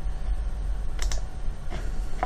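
A few light clicks at a computer, a pair about halfway through and a fainter one near the end, over a low steady hum.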